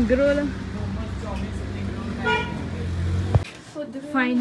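A motor vehicle's engine running steadily close by on a street, with a short car-horn toot a little past two seconds in. The street sound cuts off abruptly near the end.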